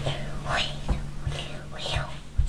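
A young child whispering right up against the microphone of a toy camera, with a couple of short handling knocks over a steady low hum.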